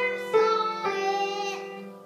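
Grand piano played slowly: a couple of notes struck about half a second apart, the last one held and fading away toward the end.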